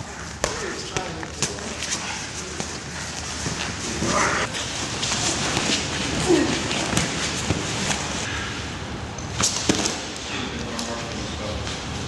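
Hand-to-hand grappling and sparring on gym mats: scattered sharp thuds and slaps of bodies and padded gloves striking, a few of them close together near the end, over indistinct voices.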